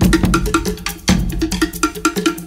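Polynesian pop song with fast, even percussion strikes, about seven a second, sharp and wooden-sounding like log drums or a cowbell, over a stepping bass line.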